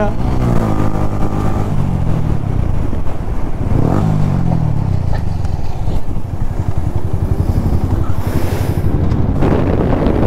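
Sport motorcycle engine heard from the rider's seat while riding. Its pitch falls over the first couple of seconds as the rider eases off, then rises and falls again about four seconds in, with a brief hiss near the end.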